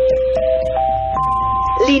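Four-note electronic chime: four steady tones stepping upward in pitch, each note overlapping the next, with a voice starting as the last note rings near the end.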